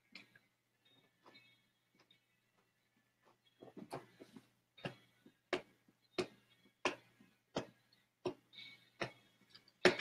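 Faint, steady ticking or tapping, about three ticks every two seconds, starting about four seconds in, after a few scattered clicks.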